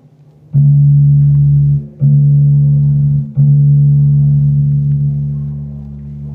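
The D string of a five-string electric bass plucked three times, about a second and a half apart, each time ringing a steady low note of the same pitch; the third note rings on and slowly fades.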